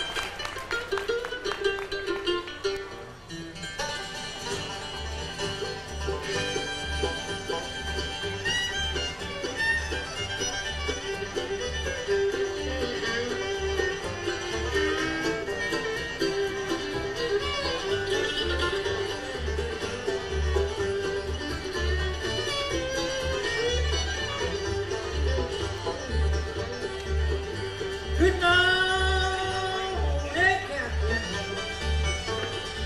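Bluegrass band playing live: fiddle, banjo, guitar, mandolin and upright bass, with the fiddle carrying the lead. The bass beat settles in a few seconds in, and a singer's voice comes in near the end.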